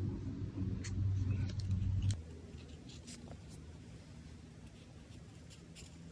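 Felt-tip art marker rubbing and tapping on paper as a page is coloured in, in faint scratchy strokes. A low steady hum fills the first two seconds and cuts off suddenly, leaving only the fainter marker strokes.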